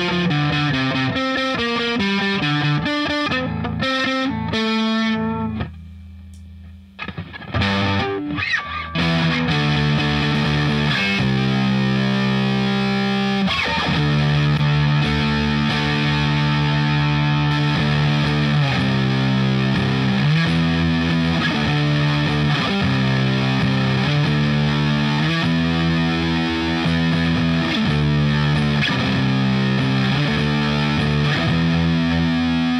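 Fender Stratocaster with single-coil pickups played through an already overdriven Marshall amp, starting with the overdrive pedal switched off. A picked single-note riff goes nearly quiet for a moment around six seconds in, then gives way to sustained, distorted chords changing every second or two.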